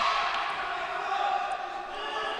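Murmur of spectators' and players' voices in a sports hall, steady and fairly quiet with no single loud event.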